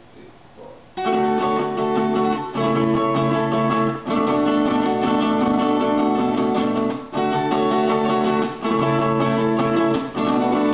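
Two acoustic guitars played together with a pick, starting about a second in: sustained chords with a few brief breaks between phrases.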